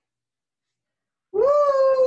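Near silence, then about a second and a half in a woman's long "woo" cheer, rising a little and then held on one pitch.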